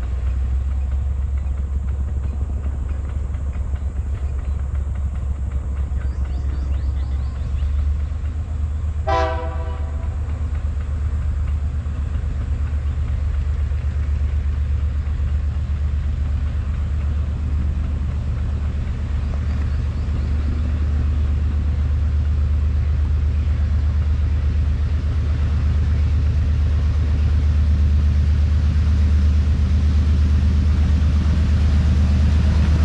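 Diesel locomotive approaching a level crossing: a low steady rumble that grows louder toward the end, with one short horn blast about nine seconds in.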